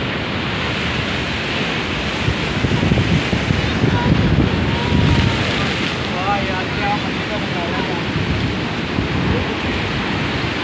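Sea surf breaking on a rocky shore, with wind buffeting the microphone and gusting hardest in the middle.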